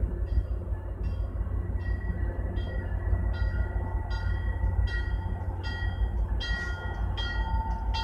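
Commuter rail train moving slowly into a yard: a steady low rumble, with a ringing struck about every three-quarters of a second that grows louder near the end as the train draws closer.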